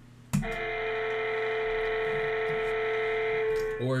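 A steady electronic tone, a held chord of several pitches, starts suddenly about a third of a second in and holds without change, like a phone ringing.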